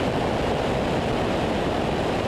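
Steady rushing in-flight noise of a light single-engine propeller aircraft: airflow buffeting a camera mounted on its wing, mixed with the engine's drone.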